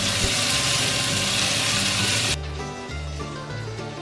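Sausages sizzling in hot fat in a frying pan, cutting off suddenly a little over two seconds in. Background music plays underneath throughout.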